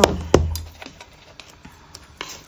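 Two sharp knocks of a picture frame being handled and set down on a craft cutting mat, the first with a dull low thud, followed by faint small clicks of handling.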